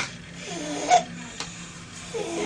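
A brief voiced sound from a person, rising to its loudest just before the one-second mark, with a couple of light clicks around it over a steady low hum.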